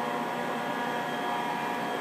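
Sandblasting equipment running steadily: an even hiss with a constant motor whine.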